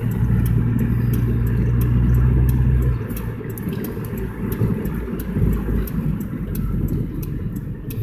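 Car engine and road noise heard from inside the cabin while driving: a steady low engine drone, louder for the first three seconds, then easing off.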